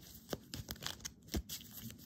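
A deck of tarot cards being shuffled and handled: a fast, irregular run of light papery clicks and crackles.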